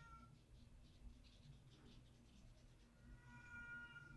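A cat meowing faintly: one drawn-out, even-pitched meow near the end, with the tail of another just as the clip begins, and faint soft ticks in between.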